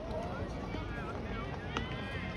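Spectators' voices chattering in the stands over open-air ballpark ambience, with a single sharp click near the end.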